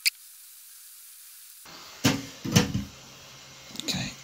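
Handling noise of a small plastic earbud being picked up off a wooden bench and gripped in the fingers. There is a sharp click right at the start, then a cluster of knocks and rubbing about two seconds in, over a faint hiss.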